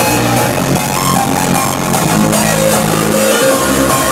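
Loud live electronic music played over a venue sound system, with a steady pulsing bass beat. The deepest bass drops out briefly a little after three seconds in, then returns.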